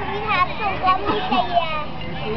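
Several young children talking and calling out over one another.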